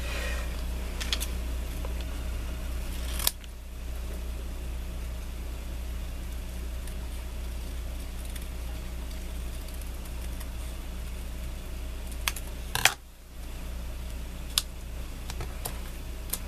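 A few sharp snips from small craft scissors trimming paper, spread out with long gaps between them, over a steady low hum.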